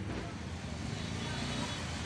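A steady low rumble of background noise that swells slightly.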